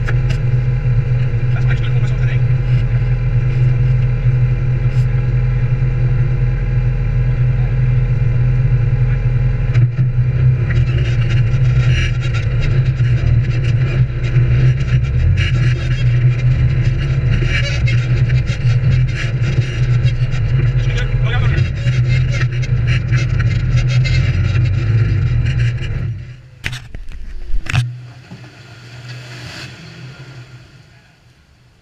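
An off-road vehicle's engine running steadily at an even pitch. The sound falls away suddenly near the end, with a couple of short knocks after it.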